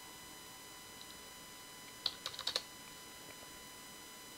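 A quick run of four or five computer keyboard key presses about two seconds in, one of them on the numeric keypad, over a faint steady electrical hum.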